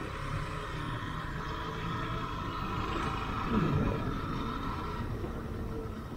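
Motorcycle running steadily at low road speed, engine and road noise heard from the rider's position.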